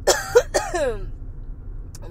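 A person coughing twice in quick succession in the first second, over the low steady rumble of a car's road noise.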